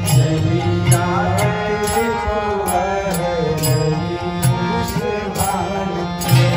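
Devotional kirtan: a voice singing a chant over a mridanga drum and hand cymbals, the cymbals struck about twice a second.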